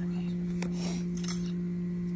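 A steady low hum with one higher overtone. Between about half a second and a second and a half in, a few short, soft crackles.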